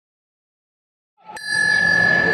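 Silence, then about a second in a single strike of a ring bell that rings on steadily over arena hall noise: the bell starting the round of an MMA bout.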